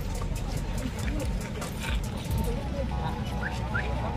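Low rumble of Mahindra Scorpio SUV engines as a convoy moves off, under faint background voices.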